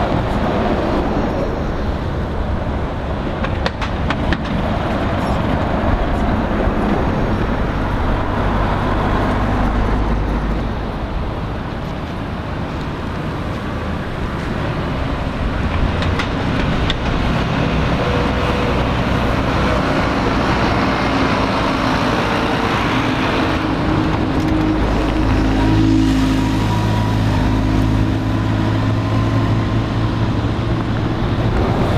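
City street traffic: buses and other road vehicles passing at close range, tyres and engines. In the last few seconds a large vehicle's engine runs steadily with a low hum.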